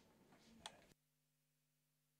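Near silence, with one faint click a little over half a second in.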